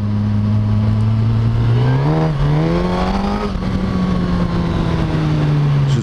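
Suzuki GSX-S1000's inline-four engine pulling under way as heard from the rider's seat, revs climbing about two seconds in and then slowly easing off.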